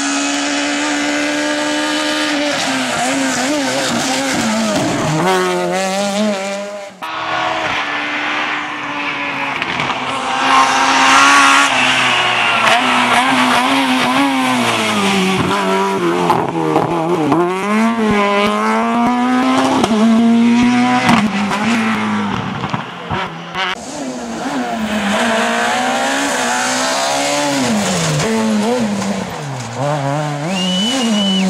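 Rally cars driven flat out on a tarmac stage, one after another, engines revving high and dropping repeatedly through gear changes and lifts, with tyre squeal as they corner. A brief drop about seven seconds in marks a change to another car.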